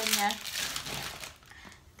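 Perfume box and its packaging being handled and pulled out, a rustling noise that dies away a little over a second in.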